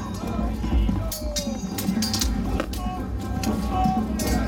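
Melee of a medieval battle reenactment: men shouting while steel weapons clash and clank several times, over a steady low rumble.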